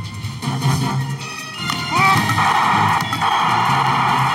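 News programme theme music for the show's opening titles. About halfway through, a rising sweep leads into a sustained rush over the music.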